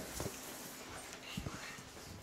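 A few soft knocks and taps over quiet room tone, from children's hands moving paper domino cards on a tabletop: one near the start and a small cluster a little past the middle.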